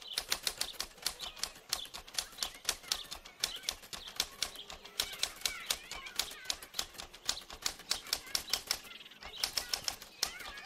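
Typewriter keystrokes: a rapid, uneven run of sharp clacks, several a second, with a short pause near the end.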